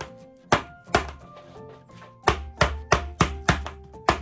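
A jar of whipped soap being whacked down on a bench to knock the air bubbles out and settle it: two single knocks in the first second, then a quick run of about seven, around three a second, in the second half. Background music under the knocks.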